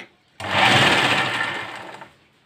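Sewing machine running one short burst of stitching through cotton blouse fabric. It starts about half a second in after a brief click and slows and fades near the end.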